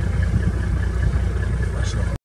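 Vehicle engine idling steadily, a low, even rumble.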